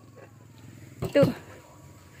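A single spoken count, "satu" (one), about a second in, over low steady outdoor background.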